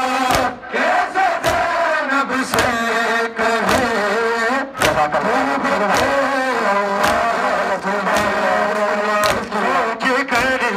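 Men's voices chanting a noha over a crowd's chest-beating (matam). The hand-on-chest slaps land in unison, a little faster than one a second, keeping time with the chant.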